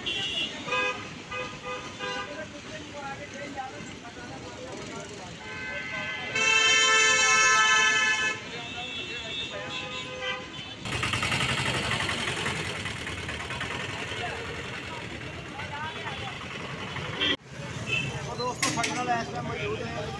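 A vehicle horn honking in street traffic: fainter short honks early on, then one long, loud blast of about two seconds near the middle, over traffic noise and voices.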